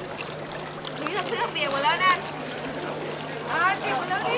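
Indistinct voices of people talking in the background, in two short stretches, over a steady low hum.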